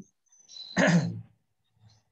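A man clearing his throat once, about a second in: a short throaty sound that falls in pitch.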